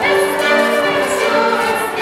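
Voices singing a Latvian folk dance tune together, accompanied by fiddle and accordion, with held notes.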